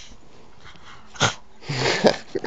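A small long-haired dog close to the microphone makes a brief sharp noise about a second in, then a longer breathy, throaty noise near the end.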